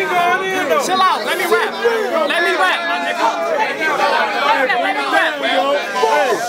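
Many voices talking and calling out over one another: loud crowd chatter.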